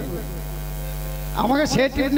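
Steady electrical mains hum through a stage PA system, heard plainly while the speech pauses. A man's amplified voice comes back in about one and a half seconds in.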